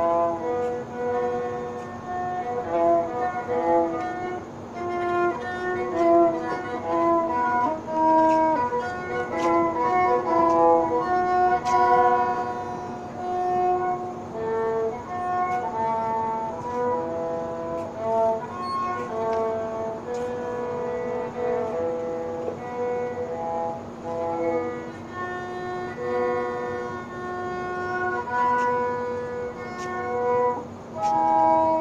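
Violin playing a melody in held notes, each about half a second to a second long, over a steady low tone.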